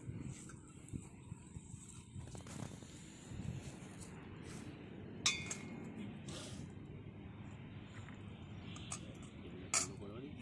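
Light clinks of a stainless-steel spoon against steel bowls and a pot, the clearest about five seconds in with a short metallic ring, over a faint low background rumble.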